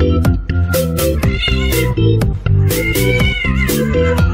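A cat meowing twice during a scuffle with another cat, a short call and then a longer one that rises and falls, over background music with a steady beat.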